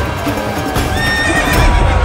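A horse whinnies about a second in, with hoofbeats, over dramatic background music.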